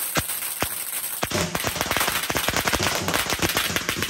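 Firecrackers: a few single bangs, then, from just over a second in, a string of firecrackers going off in a dense, rapid run of bangs.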